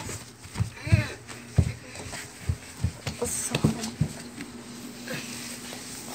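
A string of soft, irregular thumps and bumps, about one or two a second, with a few short voice sounds near the start and a faint steady hum in the second half.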